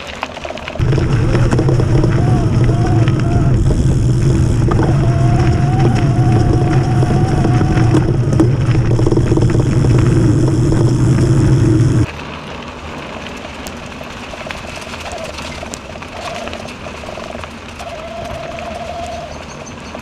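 Mountain bike with knobbly tyres rolling over a frozen dirt trail. A loud steady rumble starts about a second in and cuts off suddenly around the middle. After that, quieter rolling noise remains, with a faint wavering hum.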